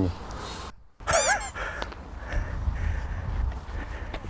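A brief high-pitched squawking call, its pitch bending up and down, about a second in, followed by low steady outdoor ambience.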